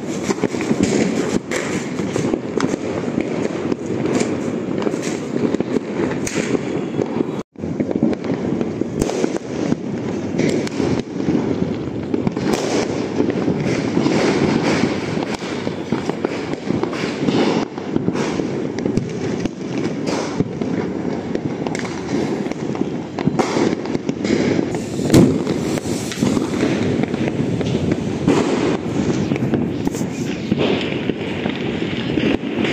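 Many firecrackers going off at once, near and far, merging into a continuous crackling din with sharp cracks throughout. One bang about 25 seconds in stands out louder than the rest, and the sound drops out for an instant about seven and a half seconds in.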